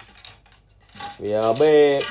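A few light clicks and clinks as a three-piece surf-casting rod is set down and shifted on a tiled floor.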